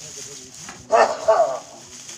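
Two short, loud animal calls in quick succession about a second in, over a faint murmur of voices.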